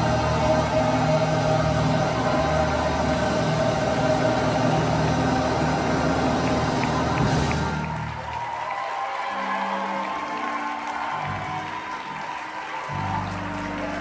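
Gospel mass choir and accompaniment holding a loud, full chord that cuts off about halfway through. Quieter, sparse held keyboard notes follow.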